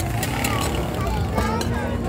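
Oysters and egg sizzling in oil on a hot flat griddle, under background voices and a steady low rumble, with a few sharp clicks.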